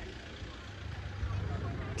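Steady low outdoor background rumble with a faint hiss, growing a little louder in the second half.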